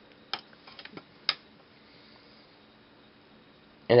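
A few sharp clicks in the first second and a half, the loudest about a second in: the charger kit's push button being released and its small board relay switching on to start charging the supercapacitor. After that only a faint steady background.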